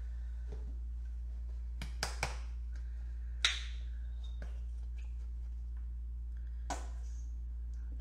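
A few sharp clicks and taps from handling a tube of acrylic paint and its cap while white paint is squeezed onto a wooden board, the loudest about three and a half seconds in, over a steady low hum.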